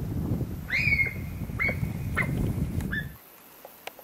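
Sika deer whistling: one longer whistle that sweeps up and holds, then three shorter ones, over a low rumble that cuts off about three seconds in.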